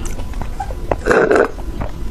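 Close-up mouth sounds of sipping a drink through a straw: a few soft clicks, then one short, louder throaty mouth sound just after a second in.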